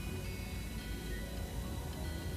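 Background film music with held, sustained tones over a low rumble.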